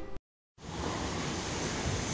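A split second of dead silence at an edit, then a steady rushing noise of wind on the microphone outdoors.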